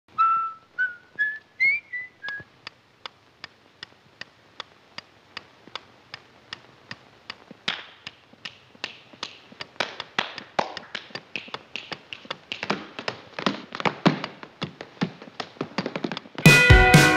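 A few whistled notes rising in pitch, then a steady ticking at about two and a half ticks a second. From about halfway, louder tap-dance steps join the ticking and grow busier toward the end.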